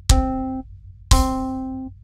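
A song playing back from a music-making app, built from synthesized lead, bass and drum tracks. Two notes sound about a second apart, each struck sharply and fading away.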